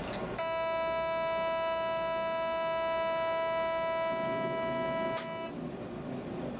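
A steady, single-pitched hooting warning tone in the cab of a DB class 151 electric locomotive. It holds for about five seconds and then cuts off suddenly.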